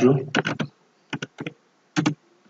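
Keystrokes on a computer keyboard: a few quick clicks about half a second in, then another short burst of clicks a little over a second in, typing a short word.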